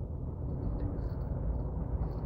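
Low, steady background rumble, with a few faint high ticks between about half a second and one second in.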